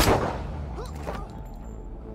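A single pistol shot at the very start, echoing and dying away over about half a second.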